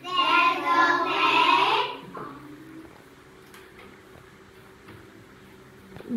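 A class of young children chanting a short phrase together in unison for about two seconds.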